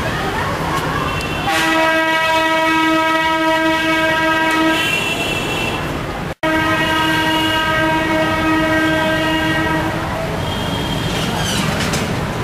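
A horn blowing long, steady single-pitched blasts, one of about three seconds and then another of about three and a half seconds, over background street noise.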